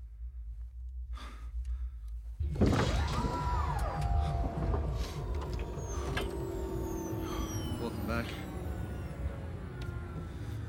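Sci-fi link pod opening: a low machine hum and a man breathing, then about two and a half seconds in a sudden mechanical rush as the pod lid opens. Falling electronic whistles and chirps follow over a continuing low rumble.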